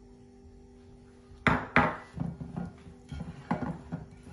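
Two sharp knocks of glassware about a second and a half in, the loudest sounds here, then a run of softer knocks and rubbing as fingers spread melted ghee over a glass pie dish.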